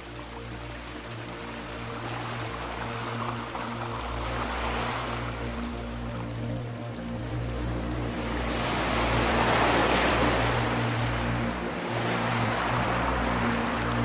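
Ambient music of long, sustained low notes under the sound of ocean waves washing in and receding. The surf swells every four to five seconds and is loudest about two-thirds of the way through.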